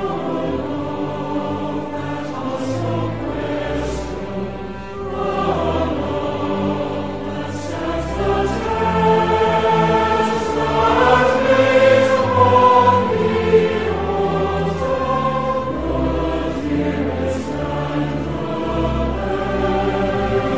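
Voices singing a hymn together, sustained and steady, over instrumental accompaniment with held bass notes.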